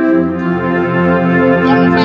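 Electronic keyboard playing sustained organ-like chords that change about half a second in. A man's voice comes in briefly into a microphone near the end.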